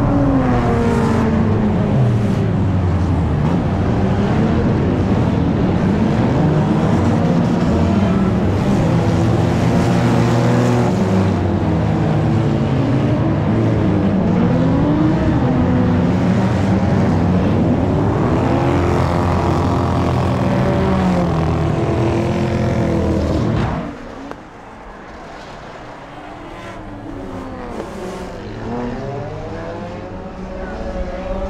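Several enduro stock-car engines running on an oval track, their pitches rising and falling as they rev and pass by. About three-quarters of the way through the sound drops abruptly and becomes quieter, with the engines still heard.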